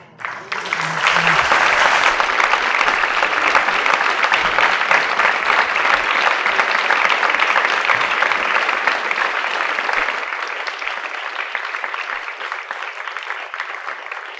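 Theatre audience applauding: the clapping breaks out at once, is in full swing within about a second, and slowly thins out over the last few seconds.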